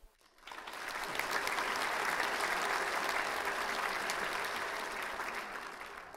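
Audience applauding at the close of a sung aria. The clapping starts about half a second in, holds steady, and thins out near the end.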